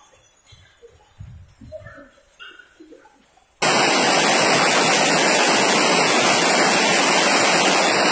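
Hail falling heavily: a loud, dense, steady noise that starts abruptly about three and a half seconds in, after a quiet stretch with only faint murmurs.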